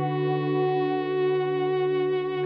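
Ambient music from two electric guitars through delay and reverb pedals and a button accordion: a held chord sounds steadily, with little change in pitch or loudness.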